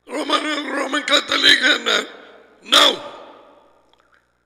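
A man talking into a headset microphone: about two seconds of continuous speech, then one short word near three seconds in, each trailing off with a little room echo.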